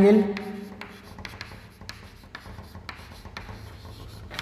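Chalk writing on a chalkboard: a run of short, irregular taps and scratches as the chalk forms letters.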